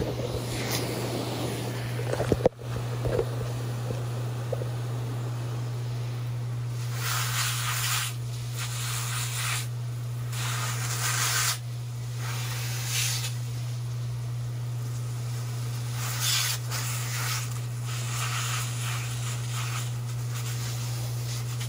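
Fine water spray from a garden hose hissing on and off in bursts of one to a few seconds as it washes over orchid leaves. A couple of sharp knocks come about two seconds in.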